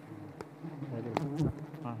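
Wild honeybees buzzing around their comb as it is smoked with a burning torch, with a few sharp clicks about half a second, one second and a second and a half in.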